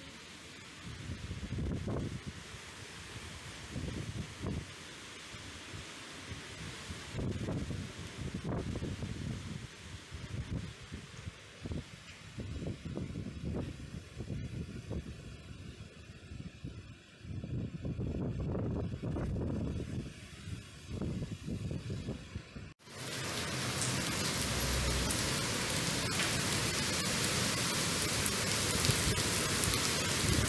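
Cyclone-force wind gusting, buffeting the microphone in uneven rumbling surges. About two-thirds of the way through it cuts off abruptly and is replaced by a steady hiss of heavy rain.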